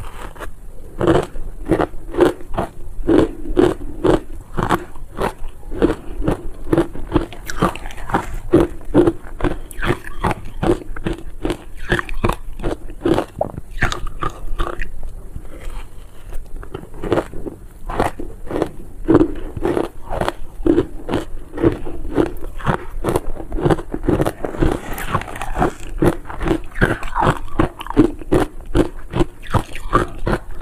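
Ice dusted with matcha and milk powder being bitten and chewed close to a clip-on microphone: rapid crunches, two or three a second, with a short lighter stretch about halfway through.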